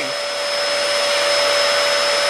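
Bagless upright vacuum cleaner running steadily: an even rushing hiss with a constant whine on top.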